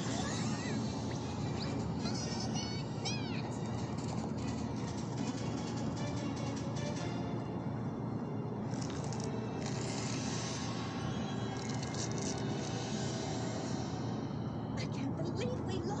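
Animated-show soundtrack: background music running steadily, with a run of short, high, arching squeaks about two to three seconds in.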